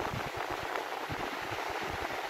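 Ocean surf: a steady rushing wash of waves breaking and churning.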